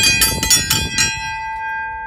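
Outdoor farm dinner bell rung by a pull rope: about five quick clangs in the first second, then the bell's tone rings on and slowly fades.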